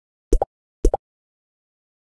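Logo-animation sound effect: two short double pops about half a second apart, each a low pop followed at once by a higher one, with dead silence between and after them.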